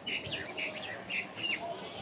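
Small birds chirping: a quick series of short, high chirps, some dropping in pitch.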